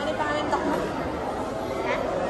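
Indistinct background chatter of several voices mixing together in a busy room.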